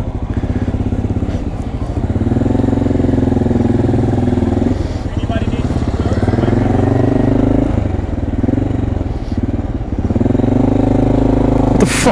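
Motorcycle engine running as the bike pulls away from a stop and rides on, its pitch rising and falling a few times as it goes through the gears.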